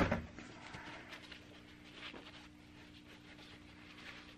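Quiet room tone with a steady low hum, over which a paper towel rustles faintly as it is handled.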